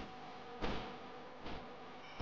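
A man breathing sharply in time with decline push-ups, three short breaths in the space of two seconds, over a faint steady hum.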